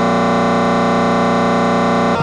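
Electronic remix music: a steady, held synthesizer chord with a buzzy, distorted edge, unchanging in pitch, with no drums or singing over it.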